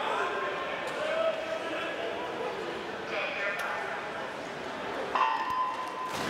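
Echoing background chatter of many voices in an indoor pool hall, with no single clear speaker. A steady tone comes in near the end.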